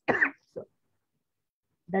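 A woman coughs briefly right at the start, then says a short word, followed by a pause of over a second before her speech resumes near the end.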